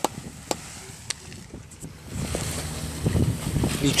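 A person hitting the sea after a jump from a high pier: a sharp splash right at the start, then the hiss and churn of disturbed water mixed with wind on the microphone.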